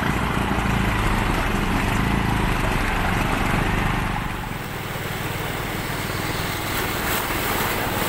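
Small motorcycle engine running steadily while a motorcycle-sidecar tricycle wades through floodwater, with a steady splashing and churning of water. The engine sound drops a little about halfway through.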